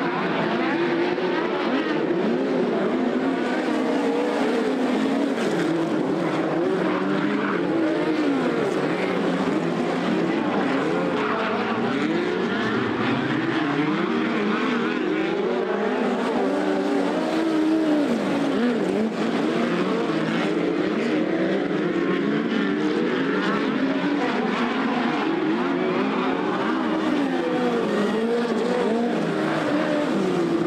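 Several midget race cars running laps on a dirt oval, their four-cylinder engines overlapping and repeatedly rising and falling in pitch as the drivers accelerate and lift off the throttle.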